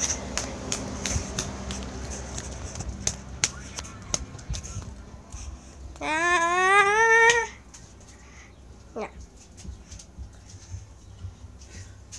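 A single long call from a voice, rising in pitch and wavering, about a second and a half long, midway through, amid scattered light clicks.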